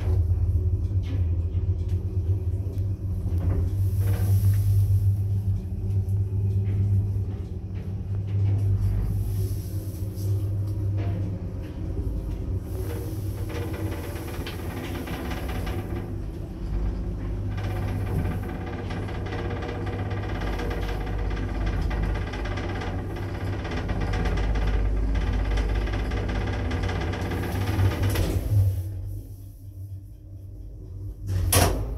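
A 1977 ZREMB Osiedlowy passenger lift heard from inside the car: a steady low hum and rumble as the car runs, with scattered clicks and knocks. The running sound dies away near the end.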